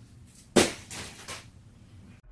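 Clothes hanger being handled as a shirt is taken off it: one sharp clack about half a second in, then two fainter clicks.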